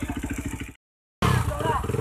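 Trail motorcycle engine running at a steady, rapid pulse. It cuts off abruptly about three-quarters of a second in, leaving a short dead gap, and then another trail bike's engine is running under voices.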